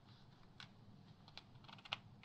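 A few faint, light clicks and ticks of fingers handling the glossy pages of a magazine, the sharpest near the end.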